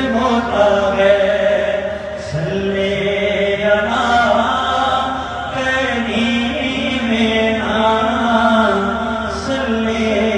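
A man singing a naat solo and unaccompanied into a handheld microphone, in long, held, ornamented notes that rise and fall without a beat.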